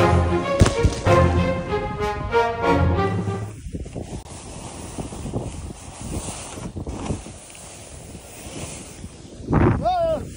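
Background music that stops abruptly a few seconds in, giving way to the steady rushing hiss of a snowboard riding through deep powder snow. A man's voice exclaims near the end.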